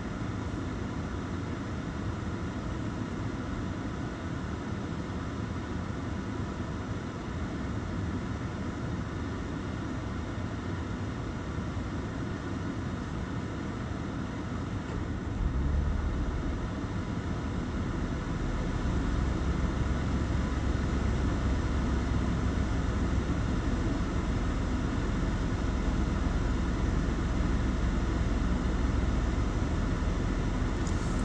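Steady cabin hum of a stationary car with its engine idling and air conditioning running. About halfway through, a deeper low rumble joins and the overall level rises a little.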